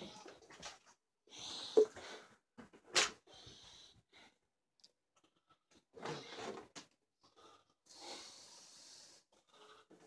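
Scattered handling and movement noises from a person close to the microphone: short rustling, breathy bursts and one sharp click about three seconds in.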